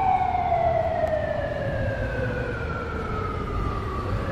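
A siren winding down: one long tone sliding slowly lower in pitch over a low rumble.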